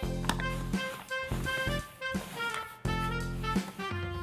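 Instrumental background music: a melody of changing notes over a line of low bass notes.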